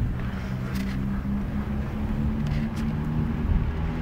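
Steady low rumble of vehicle engines with a wavering hum, and a few faint ticks.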